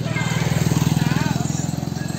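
A motorcycle passing close by, its engine running with a rapid, even putter that grows louder and then fades as it goes past.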